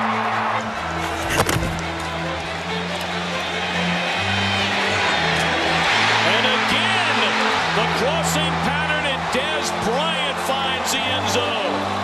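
Background music with held bass notes over a stadium crowd cheering a touchdown, with high whistles and whoops from the crowd in the second half. A single sharp knock comes about a second and a half in.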